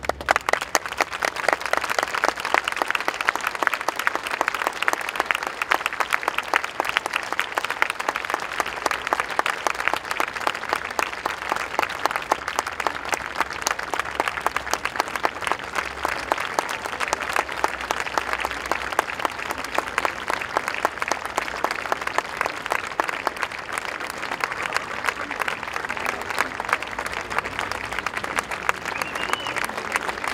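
Audience applauding, with dense, steady clapping that breaks out suddenly and eases a little over the last few seconds.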